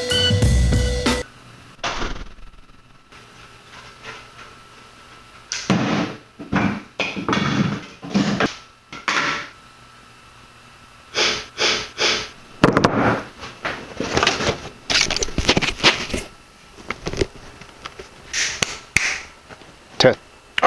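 A music track with a drum beat cuts off about a second in, followed by scattered short knocks and rustles in a small room, several in clusters with quiet gaps between them.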